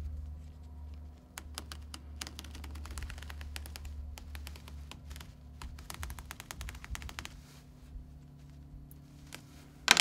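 Seam ripper cutting through tack stitches along a seam, each thread snapping with a small click in quick, irregular runs that thin out near the end.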